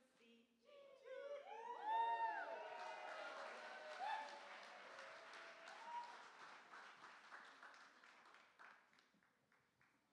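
Audience applauding with rising-and-falling whoops of cheering about a second in. The clapping then runs on and fades out near the end.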